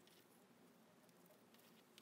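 Near silence, with a few faint soft rustles of fingers working through curly hair and a cloth measuring tape.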